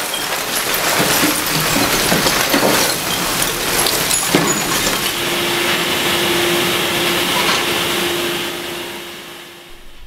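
Waste tipping out of an overhead crane grab into an incinerator feed hopper: a loud, busy rush and clatter of falling refuse. After a knock about four seconds in it gives way to a steadier industrial noise with a low steady hum from the furnace area, fading near the end.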